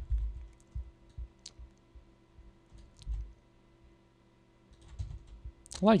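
Scattered computer keyboard and mouse clicks: soft low thumps with a few sharp ticks, spaced irregularly, over a faint steady electrical hum.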